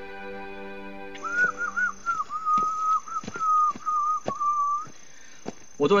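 Soft soundtrack chords fading out, then a short whistled tune of held notes and small trills for about three and a half seconds, over a few light, irregular knocks like footsteps on a forest path.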